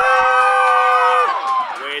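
A man's celebratory "woo!", one long whoop held on a steady pitch for about a second and a half, then falling away, followed by the start of more talk near the end.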